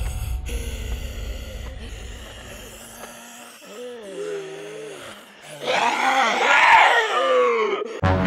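A low, drawn-out zombie-style groan about halfway through, then a man's loud, wavering scream about six seconds in, the loudest sound here. A low rumble fades out over the first three seconds.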